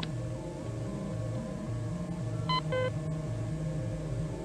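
Electronic sci-fi computer sound effects: a low drone that steps back and forth between two pitches, with a quick pair of bright electronic bleeps about two and a half seconds in.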